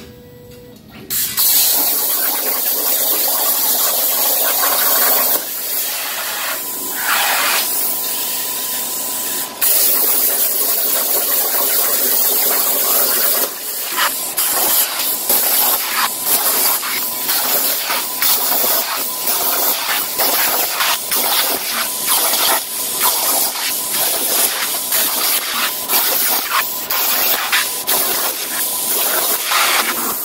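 CNC plasma torch recutting holes in quarter-inch mild steel on a 60 amp unshielded consumable. The arc and its air jet make a loud, steady hiss with a faint thin whine, starting about a second in. The hiss is broken by many short gaps as the torch stops and restarts from hole to hole, more often in the second half.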